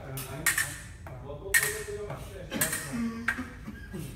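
Fencing blades clashing, steel on steel, in a parry-and-riposte drill: about four sharp strikes, each with a brief metallic ring.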